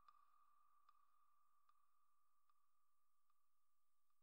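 Near silence at the very end of a music track: only a faint steady high tone, with a faint tick a little under once a second.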